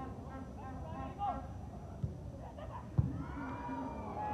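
Distant shouts of players and spectators in a sparse stadium, with a sharp thud of a soccer ball being struck hard about three seconds in and a lighter knock about a second earlier.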